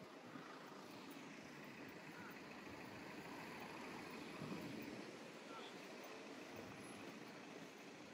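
Faint city street traffic noise, a steady hum of vehicles that swells slightly about halfway through.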